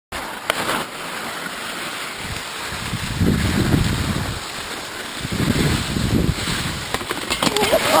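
Skis sliding and scraping over snow with wind buffeting the microphone of a moving camera, swelling twice into a heavier low rumble. A person exclaims near the end.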